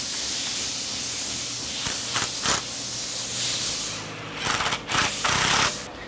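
Hand ratchet clicking while bolts on a Ford AOD transmission's extension housing are snugged down: a few single clicks about two seconds in, then short runs of rapid clicking near the end, over a steady background hiss.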